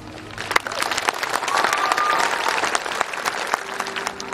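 An audience applauding. The clapping starts about a third of a second in as the last notes of the music fade, and stays dense throughout.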